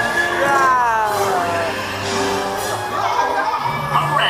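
Dark-ride show soundtrack of cartoon music and voices, with a long tone sliding down in pitch over the first couple of seconds.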